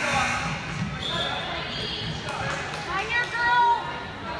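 A basketball bouncing on a hardwood gym floor, with people's voices calling out over it in a large hall.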